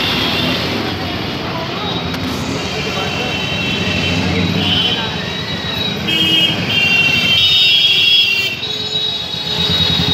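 Busy market street crowd: many voices chattering over passing motorbikes and traffic. Steady high-pitched tones sound several times, mostly in the second half.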